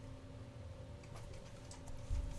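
Faint computer keyboard typing, a few light taps mostly in the second half, over a low steady electrical hum.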